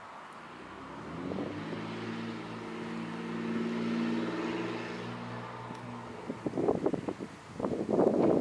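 A motor vehicle passes on the road: its engine note and tyre hiss swell to a peak about halfway through and fade away. In the last couple of seconds, loud irregular buffeting from wind on the microphone.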